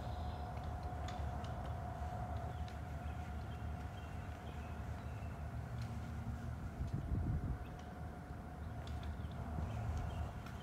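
Outdoor background: a steady low rumble with a faint, steady high hum, and a brief gust of wind on the microphone about seven seconds in.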